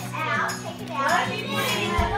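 Indistinct talking with a child's voice among it, over steady background music.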